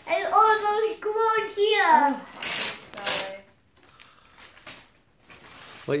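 A young child's high-pitched voice held on long notes for about two seconds, then wrapping paper ripping in two quick tears as a present is opened.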